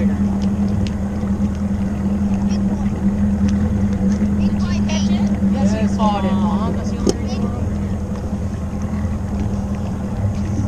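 Bass boat's outboard motor running steadily at low speed, a constant low drone. Faint voices come in about five seconds in.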